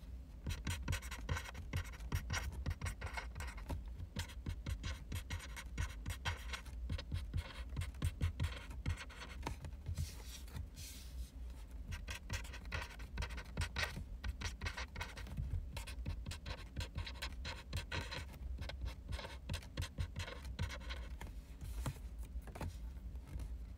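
Black marker pen writing on cards close to the microphone: a steady run of short scratchy strokes, with a brief smoother stretch about ten seconds in.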